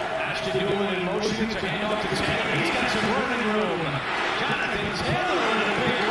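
Football game broadcast audio: a commentator's voice calling the play, with several short knocks.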